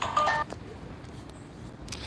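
A short electronic phone tone made of a few steady pitches, lasting about a third of a second near the start, followed by low background noise.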